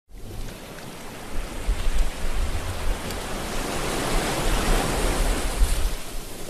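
Ocean surf: a steady rush of waves breaking on a beach, growing louder about a second in.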